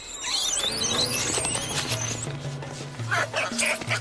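Langur monkeys screaming, shrill wavering squeals for about two seconds and a few shorter calls near the end. These are the distress screams of mothers trying to fend off a male attacking their babies. A music score with a low pulsing bass plays underneath.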